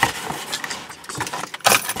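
Handling noise of a cardboard shipping box being unpacked by hand, irregular rustling and rattling with a louder burst near the end.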